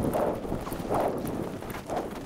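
Skis cutting through fresh powder snow in linked turns: a rushing swish that swells with each turn, about once a second.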